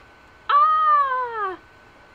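One high-pitched cry, about a second long, starting about half a second in; it rises a little, then slides down in pitch.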